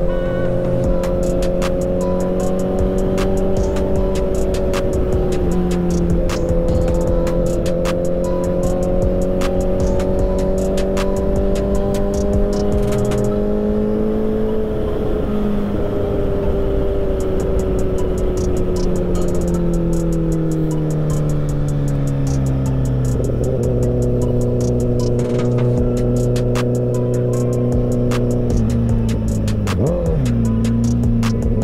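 Sportbike engine pulling at a steady cruise, its note sinking gradually as the bike slows. There is a clear drop about two-thirds of the way through and a quick dip near the end.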